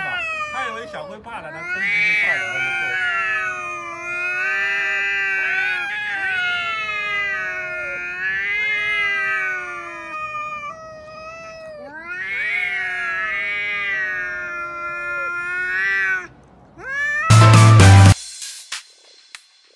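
Domestic cats yowling at each other in a standoff: a run of long, wavering, drawn-out caterwauls with short pauses between them. Near the end a brief loud burst comes in.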